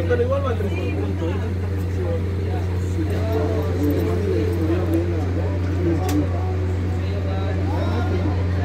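Players' voices calling and shouting across a football pitch, over a steady low hum. A single sharp knock comes about six seconds in.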